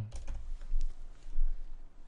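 Typing on a computer keyboard: a short, uneven run of keystroke clicks.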